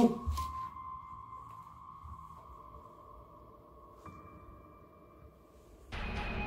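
Faint sustained electronic tone, slowly fading, with a fainter higher tone shifting up about four seconds in.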